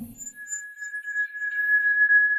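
A steady high-pitched ringing tone starts almost at once and holds unbroken: a tinnitus-like ear-ringing sound effect marking a sudden pain in the head.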